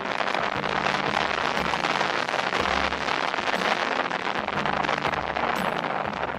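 Loud crackling rush of wind on a camera microphone on a moving three-wheeled motorcycle, with background music and its bass notes underneath.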